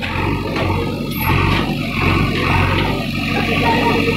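Diesel engine of a JCB backhoe loader running steadily with a low hum while it works on a demolished brick wall.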